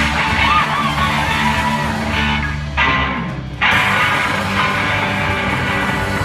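Live rock band playing the opening of a song: electric guitars over a drum kit, loud and full. About three seconds in the high end briefly drops away, then the whole band comes back in.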